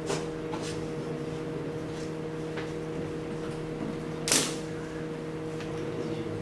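A steady low hum made of several held tones, with a few light clicks and one sharper knock about four seconds in.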